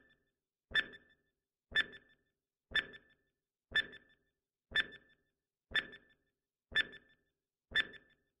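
Countdown timer sound effect: a sharp tick with a short ringing tone, repeating evenly once a second.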